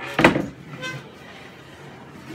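A single loud wooden knock with a short rattle about a quarter second in, as the hinged timber-and-plywood extension of a folding workbench is lifted to fold it back over.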